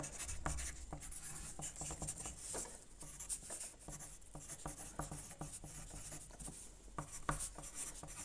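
Writing by hand on a sheet of paper: faint, irregular scratching strokes as words are copied out one after another.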